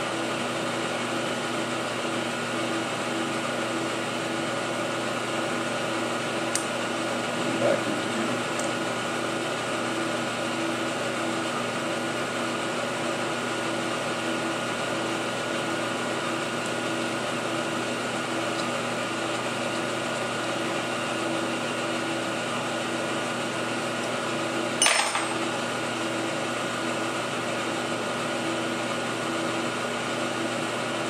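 Steady machine-shop hum with several fixed tones, a fan or idle machinery running. Light metal clicks and handling sounds come over it, one about six seconds in and another near eight seconds. A sharper tap comes about 25 seconds in.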